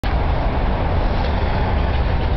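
Engine of a CNG-fitted Ford F-250 running, a steady low rumble with a hiss above it.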